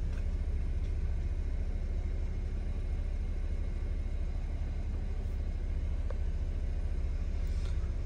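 Chevrolet Camaro engine idling, a steady low rumble heard from inside the cabin, with a faint brief tick about six seconds in.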